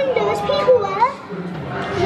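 Children's voices chattering and calling out in a large indoor hall, with one voice rising in pitch about a second in and a quieter moment after it.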